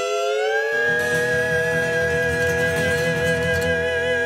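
Cowboy harmony singing: men's voices slide up into a long held chord, with guitar accompaniment joining underneath about a second in.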